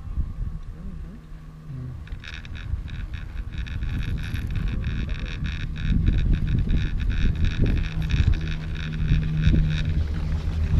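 A high, steady whirring from the chairlift's haul rope running through the tower sheaves starts about two seconds in and cuts off as the chair reaches the tower. Underneath it is the low rumble of wind on the microphone.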